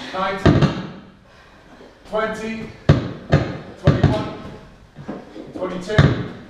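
A 6 kg medicine ball thudding against a boarded wall during wall-ball reps: several sharp thuds, one about half a second in and a cluster around three to four seconds in, with voices in between.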